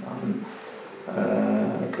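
A man's voice making low, drawn-out hesitation sounds between words: a short one at the start, then a longer held vowel from about a second in.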